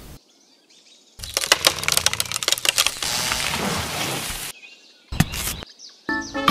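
Dry soil crunching and crackling as it is worked by hand, in a quick run of sharp crackles that gives way to a steady gritty scraping and then one short scrape near the end. Birds chirp faintly at the start.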